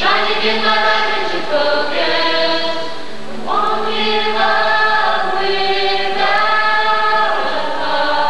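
A choir singing long held chords in harmony, the chord changing every second or two.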